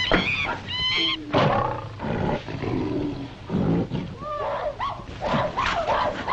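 Jungle animal sound effects on an old film soundtrack: a string of overlapping wild animal cries, high swooping calls at the start and again near the end, with lower roar-like calls in between.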